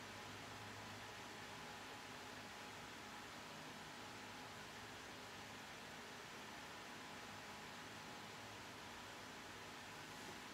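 Faint, steady hiss of room tone, near silence, with no distinct sound events.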